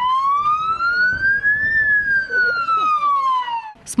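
Police patrol car's electronic siren sounding one slow wail, rising in pitch to a peak a little under two seconds in, then falling and cutting off shortly before the end.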